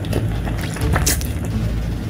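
Close-miked eating: slurping a mouthful of instant noodles and chewing, with a run of short wet mouth clicks and smacks and a sharper slurp about a second in, over a steady low hum.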